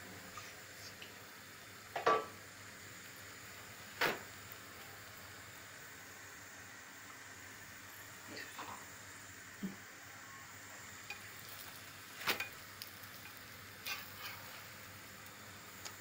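Faint steady sizzle of a gözleme frying on a hot pan on a gas stove, with a few sharp knocks of utensils against the pan, the loudest about 4 and 12 seconds in.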